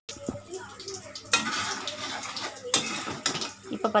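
Metal slotted spoon stirring and scraping chicken around a metal pan, with the food sizzling as it fries. Irregular scrapes, with louder ones about a second in and twice near three seconds.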